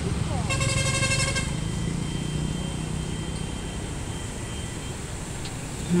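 A motor vehicle engine's low hum fading as it passes. A horn sounds once for about a second near the start.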